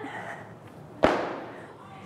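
An exercise mat thrown down onto the gym floor: one sharp slap about a second in, with a short echo trailing off.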